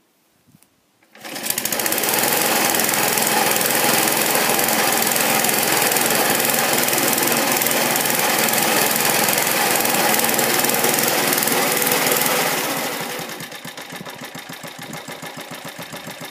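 Qualcast Suffolk Punch cylinder lawnmower's small petrol engine starts about a second in and runs loud and steady, then drops to a lower, evenly pulsing run near the end.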